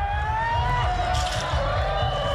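Drawn-out, high-pitched voices calling, with slowly sliding pitches, over an uneven low rumble.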